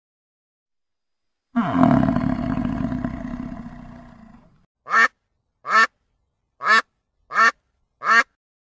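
A European bison gives one long, low call starting about a second and a half in and fading out over some three seconds. Then domestic geese honk: a run of short honks about a second apart.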